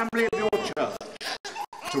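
Speech: a voice speaking, with no other sound standing out.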